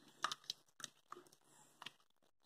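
A green silicone spatula stirring thick black bean stew in a pressure cooker pot: a few faint, short wet clicks and scrapes spread through the moment.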